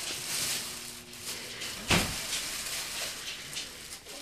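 Tissue paper rustling and crinkling as a small child pulls it out of a gift box, with one louder thump about two seconds in.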